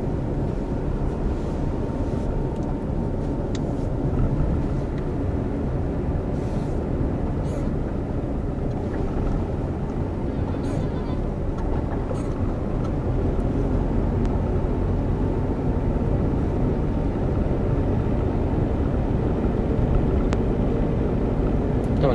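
Steady engine and road noise inside the cabin of a moving car.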